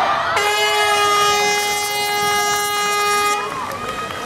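Start horn, likely an air horn, sounding one long steady note of about three seconds: the signal that starts the triathlon swim. Crowd voices can be heard around it.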